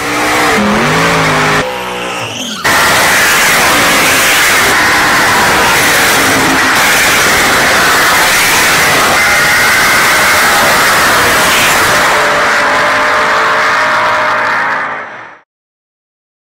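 Car engine revving up and down for the first couple of seconds, then a loud, steady run of tyres squealing and skidding with the engine under it. It cuts off suddenly near the end.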